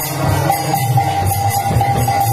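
Odia devotional kirtan: brass kartal hand cymbals clash in a steady rhythm over a held harmonium tone, with men's voices chanting.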